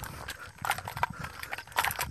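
A few light, irregular clicks and taps in a short lull between words.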